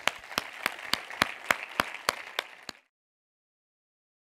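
Audience applauding, with one pair of hands close by clapping about three or four times a second above the general applause. It cuts off abruptly about three seconds in.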